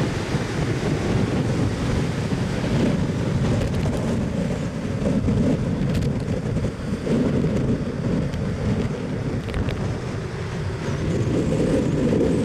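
Strong wind buffeting the microphone as a loud, low, fluctuating rumble over the wash of breaking surf.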